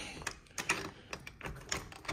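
Irregular light clicks and rattles from the back door being handled, its rusted lock being tried and the blinds on its glass rattling.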